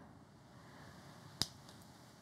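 A wooden toothpick set down on a clear plastic lid: one short, sharp click about one and a half seconds in, against near silence.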